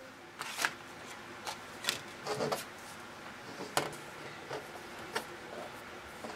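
Strips of glitter cardstock being handled and laid down on a table: light paper rustling with a scattered series of soft taps and clicks.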